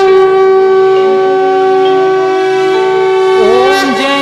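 Conch shell (shankh) blown in one long, loud, held note that wavers and drops in pitch near the end, over a soft backing music drone.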